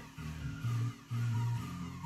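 Music played back from a cassette on a Kenwood KX-550HX stereo cassette deck, mostly low held bass notes starting and stopping about every half second; the deck is playing properly.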